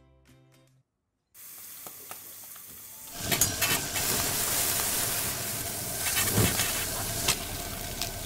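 Food sizzling as it is stir-fried in a hot wok, with a few clinks of a metal ladle against the pan. The sizzle starts as a soft hiss a little over a second in and turns loud about three seconds in.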